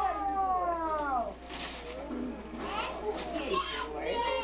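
A high voice calling out a long, falling 'oooh' in the first second, followed by shorter, rising and falling exclamations near the end.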